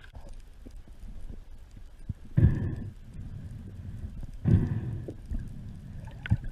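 Water rushing and swirling, heard underwater, in two surges about two seconds apart over a steady low rumble.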